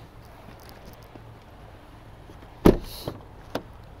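A Jeep Renegade car door shutting with one loud thud about two-thirds of the way through, followed by a lighter latch click.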